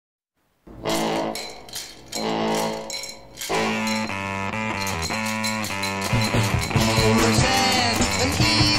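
Music soundtrack starting after a brief silence: two held chords with rhythmic hits, then a fuller rhythmic band passage kicks in about three and a half seconds in and builds.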